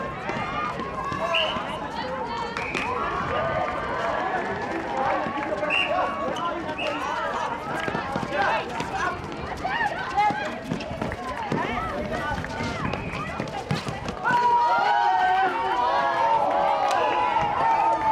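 Netball players and courtside spectators calling and shouting during play, with running footsteps and short sharp knocks on the hard court. The voices get louder about three-quarters of the way through.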